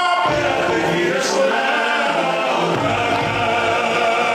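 A group of voices singing together, a Tongan song accompanying a tau'olunga dance.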